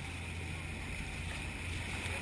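Steady rush of water along a boat's bow and wind on the microphone, over a low steady hum.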